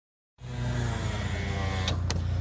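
A vehicle engine idling steadily, with a short click near the end.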